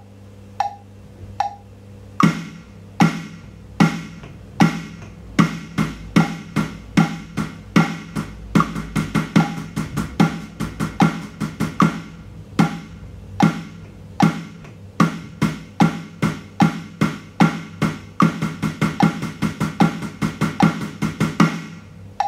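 Snare pad of an electronic drum kit struck with sticks in time with a metronome click at 75 BPM. Starting about two seconds in, he plays a bar of quarter notes, a bar of eighth notes and a bar of sixteenth notes, so the strokes double in speed twice, then goes round the same sequence a second time. The click track's short tick sounds on every beat throughout.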